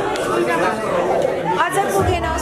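Several people chatting at once, overlapping voices of a group at a table.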